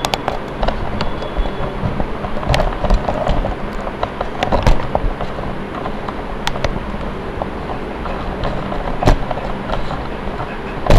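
Small battery-powered robot car driving across a tiled floor, its DC gear motors running as a steady noisy hum, with scattered clicks and knocks throughout.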